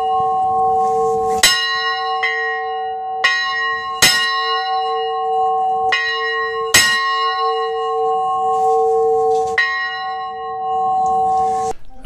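Church bell struck about seven times at an uneven pace, each strike over a steady ringing that carries on between strikes. The ringing cuts off abruptly just before the end.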